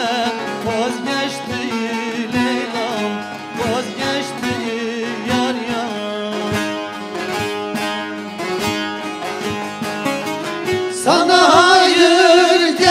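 Bağlamas (long-necked Turkish saz lutes) played in a quick plucked instrumental passage of a Turkish folk song over a steady low note. A man's singing voice comes in loudly about eleven seconds in.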